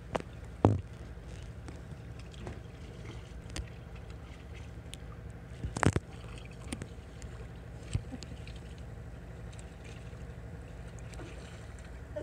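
Steady low hum of an idling boat motor, broken by a few sharp knocks or splashes against the inflatable boat's side, the loudest about six seconds in.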